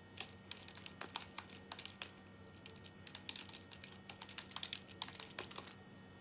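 Typing on a keyboard: quick, irregular key clicks coming in short bursts, faint, with a low steady electrical hum underneath.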